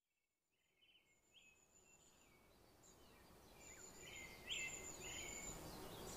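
Birdsong over a soft outdoor hiss, fading in from silence and growing steadily louder: repeated high chirps and thin, high whistles.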